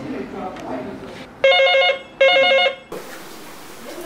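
Electronic telephone ringing: two short warbling trills about a quarter second apart, the call ringing through before it is answered.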